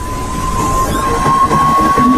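An edited-in sound effect: one long whistle-like tone that creeps up in pitch in small steps, over a hiss.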